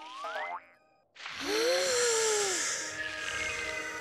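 Cartoon sound effects and music. A rising, stepped glide ends about half a second in, then there is a moment of silence. After that a shimmering, magical swell with a tone that bends up and back down settles into soft, sustained music.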